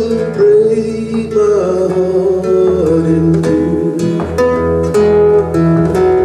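Acoustic guitar and acoustic bass playing an instrumental passage of a slow folk song, with plucked notes over a steady bass line.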